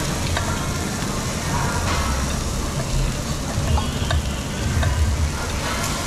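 Beef sizzling on a tabletop Korean barbecue grill plate, a steady frying hiss over a low rumble, with a few light clicks as scissors and tongs work the meat.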